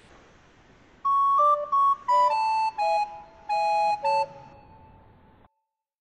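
A short electronic chime jingle: a quick run of bell-like notes, mostly stepping downward, lasting about three seconds, then fading out before the sound cuts off.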